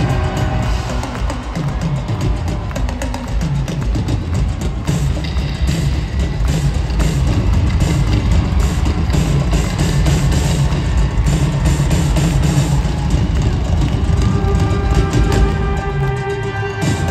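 Live band playing an instrumental passage of a synth-pop song with no vocals: a drum kit keeps a steady driving beat over heavy bass and synthesizers, heard through the arena's public-address system.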